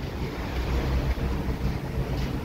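Steady low drone of a ship's engine and machinery under way, with wind noise on the microphone.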